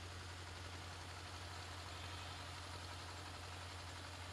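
A faint, steady low hum with a light hiss behind it.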